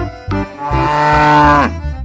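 A cow mooing, one long moo of about a second whose pitch drops as it ends, over bouncy keyboard music.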